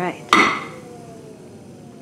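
A single sharp clank with a brief ring about a third of a second in, then the faint whine of the pottery wheel falling in pitch as the wheel, carrying a large canvas, slows down.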